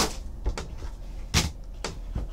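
Plastic card holders knocking and clicking against each other and the cardboard box as they are handled and lifted out: four short sharp knocks, the loudest about a second and a half in.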